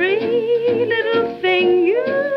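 1938 small swing-band recording played from a 78 rpm shellac record: a lead melody line with a wavering vibrato glides between held notes over the rhythm section. The sound is cut off above the upper treble.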